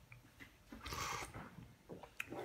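A person slurping a sip of soup broth from a spoon: one short, noisy slurp about a second in.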